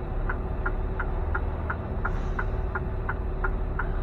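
Semi-truck's turn-signal flasher ticking steadily in the cab, about three ticks a second, over the low, steady idle of the truck's diesel engine.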